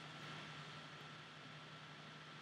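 Near silence: faint steady hiss with a low hum, the room tone of a lecture recording.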